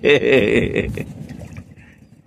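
A man laughing briefly, the sound trailing off about a second in.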